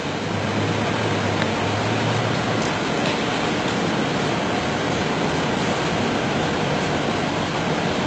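A steady, fairly loud rushing noise with no breaks, with a faint low hum in its first few seconds.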